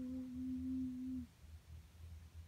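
A person humming one long, steady hesitant "mmm" on a single pitch while thinking what to say. It stops about a second in, leaving only faint room tone.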